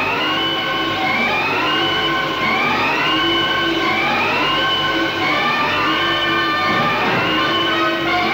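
Dramatic background score: a pitched, siren-like phrase that slides upward over and over, roughly once a second, over a low sustained note.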